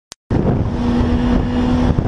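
A vehicle travelling at road speed, heard from a camera mounted on it: wind buffeting the microphone over a steady engine hum. The sound starts abruptly about a third of a second in, after a short click.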